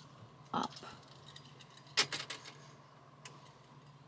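A sharp click about two seconds in, followed by a few lighter clicks and a short light rattle, over a faint steady low hum.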